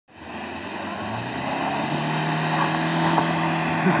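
Maruti Suzuki Vitara Brezza's engine running under load as the SUV pulls through deep mud, a steady drone that grows louder as it comes closer.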